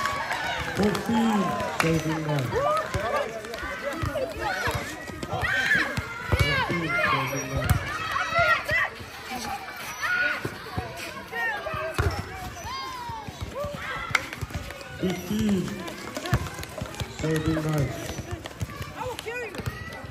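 Several voices of players and onlookers calling out and talking over one another, with a few sharp smacks of a volleyball being hit.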